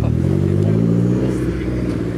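A car engine revving as the car pulls slowly past: the revs climb in the first half-second, then ease off and hold.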